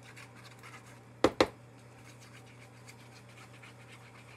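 Liquid glue squeezed from a nearly empty bottle onto a cardstock panel: faint scratching of the glue tip on the paper, with two sharp pops close together about a second in.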